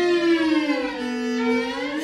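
Chamber music: a bowed string instrument holds a single note that slides slowly down in pitch for about a second and a half, then levels off and edges back up.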